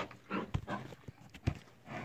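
Cattle moving about on grass: irregular soft hoof scuffs and rustles, with two sharper low thumps about half a second and a second and a half in.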